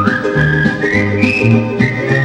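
Old country record playing on a turntable: an instrumental break with a whistled melody stepping up in pitch over an alternating bass line and steady beat.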